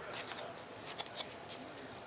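Faint handling sounds of foam-board pieces being fitted by hand: light rustling and rubbing with a few small clicks about a second in.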